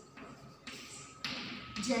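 Chalk tapping and scraping on a blackboard in a few short strokes as a word is written, the loudest stroke a little past the middle.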